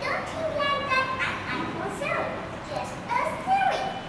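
A young girl's high voice, talking in short phrases with brief pauses.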